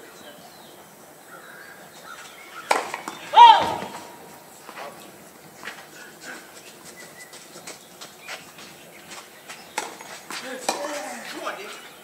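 On a tennis court, a sharp hit comes about two and a half seconds in, followed at once by a loud, short shouted call that falls in pitch. After that there are scattered faint clicks over low crowd and court noise, and a few faint voiced sounds near the end.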